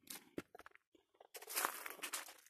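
Footsteps crunching through dry leaf litter and sticks: a few short crunches and a sharp snap early on, then a longer, louder crunching rustle in the last half second.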